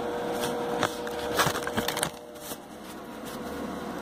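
Handling noise from the recording device being grabbed and moved: a string of knocks and clicks over the first two seconds, then a quieter steady hiss.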